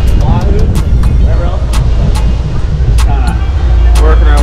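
Sportfishing boat running at speed: a loud, steady low rumble of the engines and rushing air, with sharp knocks of wind buffeting the microphone. A man's voice comes through in short snatches.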